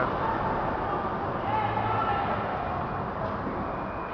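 Steady background noise with faint, indistinct voices.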